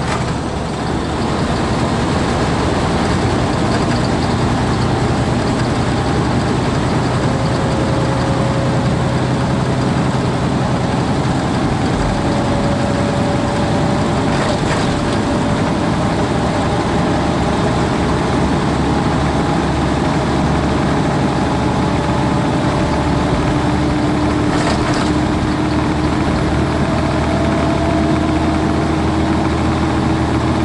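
Semi truck cruising at steady highway speed, heard from inside the cab: a constant engine drone with road and wind noise and faint whines that drift slowly in pitch.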